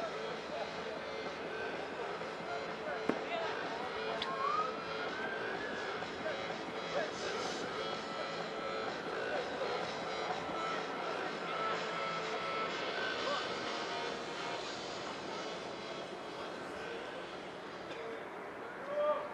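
Open-air sound of a rugby match heard from the stands: distant voices of players and spectators calling out over a steady rushing background noise, with a sharp click about three seconds in.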